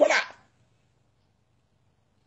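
A man's chanting voice ends a phrase with a brief falling sound in the first half-second, then near silence.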